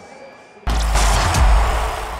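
A bass-heavy music sting for an end-card logo starts suddenly about two-thirds of a second in and stays loud, after a faint quiet stretch.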